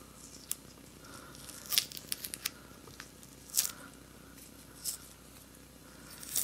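A plastic guitar pick scraping under a solvent-softened paper sticker on a bass body and peeling it up. There are short scratchy tearing sounds, with a quick cluster of them about two seconds in and a few more spaced out after.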